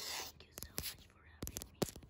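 Long acrylic fingernails on a hard surface near the microphone: a brief scratchy hiss at the start, then about five sharp separate taps.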